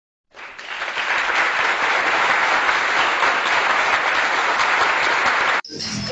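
Applause: a dense, even clapping sound that swells in over the first second, holds steady, and cuts off abruptly about five and a half seconds in.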